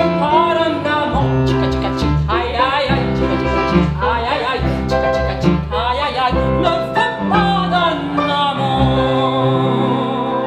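Live acoustic performance of a Liberation-era French chanson: a woman singing with vibrato, accompanied by a Yamaha upright piano and a plucked double bass holding low notes.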